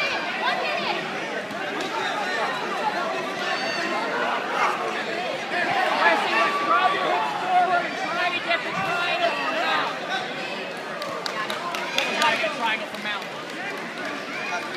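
Crowd babble in a large hall: many overlapping voices talking and calling out at once, with no single speaker standing out.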